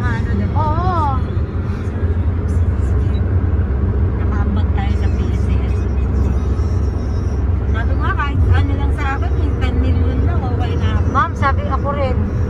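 Steady low road and engine rumble inside a moving car's cabin at highway speed, with brief snatches of voices over it several times.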